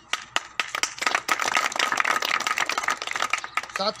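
A small crowd clapping: a few scattered claps at first, quickly filling into steady applause that thins out near the end.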